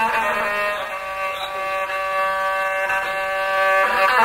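Rababa, the Bedouin one-string bowed fiddle, playing an instrumental phrase between ataba verses, then settling about a second in on one long held note.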